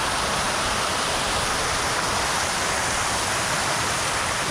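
Shiraito Falls, a wide curtain of many thin streams of spring water seeping from between layers of rock and falling into a shallow pool, making a steady, even noise of falling water.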